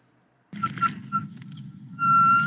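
Half a second of silence, then a low steady rumble of road and wind noise picked up by a hand-held phone on a moving bicycle. A faint, high, thin whistling tone comes and goes over it and turns steadier near the end.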